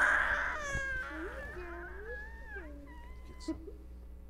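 A baby crying loudly at the start, the cry trailing off within the first second into softer whimpers that rise and fall in pitch.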